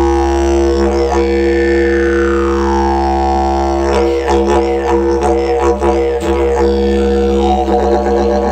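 Didgeridoo of termite-hollowed mallee gum eucalyptus, keyed to C#, playing a continuous deep drone. For the first few seconds its overtones sweep slowly downward, and from about four seconds in a quick rhythmic pattern is played over the drone.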